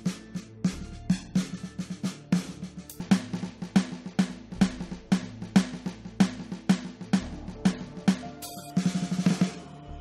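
Sampled drum kit played through Freedrum motion sensors on drumsticks swung in the air: a steady beat of kick and snare hits, with a fast roll near the end.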